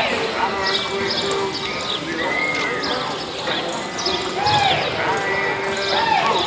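A cutting horse's hooves thudding and shuffling on the arena's deep dirt as it works a calf. Over them come several calls that rise and fall in pitch, and a longer held call, all echoing in the indoor arena.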